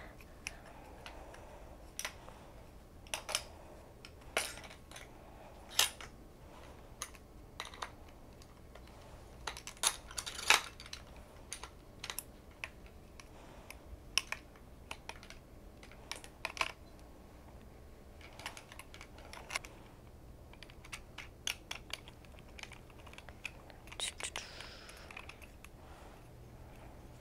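Aluminium underarm crutch being adjusted by hand: irregular light metallic clicks and taps as the handgrip's wing nut and through-bolt are worked loose and the grip is moved to another hole, with a short scraping sound near the end.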